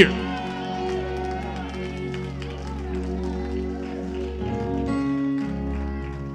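Church music playing held chords during a moment of praise, the chord changing about five seconds in, with faint voices from the congregation beneath.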